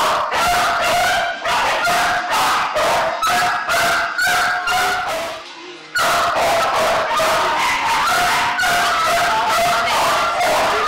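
A chorus of kennel dogs barking and yelping, with many high-pitched yaps overlapping several times a second and a brief break about five and a half seconds in.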